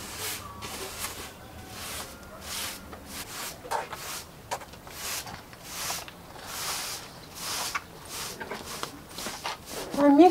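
Plastic-bristle broom sweeping a concrete floor: repeated swishing strokes, roughly one a second. A short pitched sound cuts in about four seconds in.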